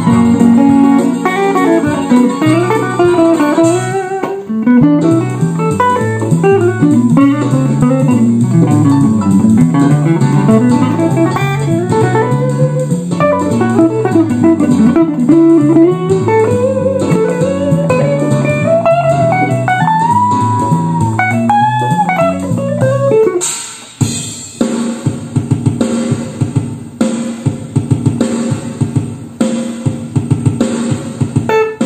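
Solo Stratocaster-style electric guitar played fingerstyle: a melody over bass notes, with string bends. About 24 seconds in it drops briefly and switches to a choppy, evenly pulsed rhythm pattern.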